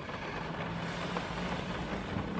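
Steady low hum and hiss of a car's cabin, a faint continuous drone with no distinct events.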